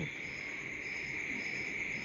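A steady, high-pitched background buzz with a faint, softer pulsing above it.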